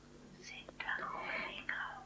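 Faint whispered speech begins about half a second in, after a brief near-silence, over a low steady hum.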